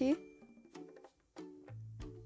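Quiet background music with a few held low notes and light taps, dipping almost to nothing about a second in. The tail of a woman's spoken word opens it.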